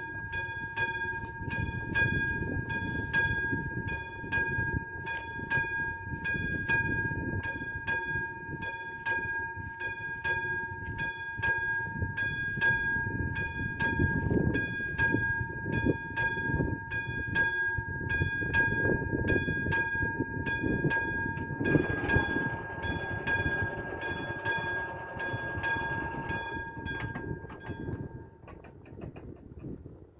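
Railway level-crossing warning bell ringing with a fast, even stroke over a steady ringing tone. About 22 seconds in the barrier booms start to come down with a mechanical whirr, and the bell stops near the end once they are lowered.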